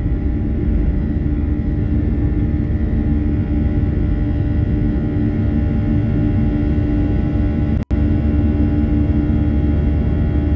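Jet airliner engines at takeoff power heard from inside the cabin: a loud, steady roar with a deep rumble and several steady whining tones over it as the plane lifts off and climbs. The sound cuts out for an instant about eight seconds in.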